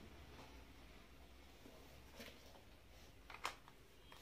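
Near silence: room tone, with a couple of faint clicks from a small plastic cosmetic jar being handled, the sharpest a little after the three-second mark.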